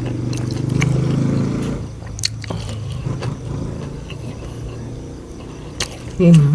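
A man eating with his mouth full. A long low humming "mmm" of relish runs for about the first two seconds, then gives way to quieter chewing and lip-smacking clicks.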